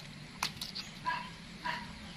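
A sharp click near the start, then two short, high squeaks from a young macaque, a little over half a second apart.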